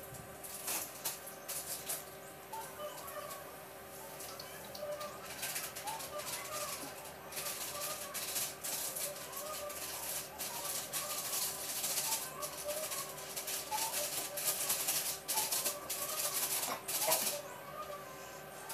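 Raw rohu fish pieces being scraped and cut against a boti blade: repeated short rasping strokes, coming faster and louder from about five seconds in.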